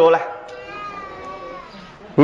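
A man's voice: the tail of a spoken phrase, then a quieter drawn-out vowel that slowly wavers in pitch and fades away.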